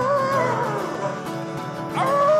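Acoustic guitar strumming a country-style accompaniment. A man's sung note slides down and fades within the first second, leaving the guitar alone until the voice comes back at the very end.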